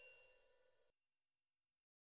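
The ringing tail of a high, bell-like chime from a logo sound effect, fading out within the first second, followed by silence.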